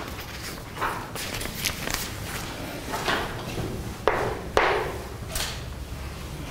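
Several short scrapes and knocks, about six of them, from sheets of paper being handled and chalk striking a blackboard, over a steady low hum in the room.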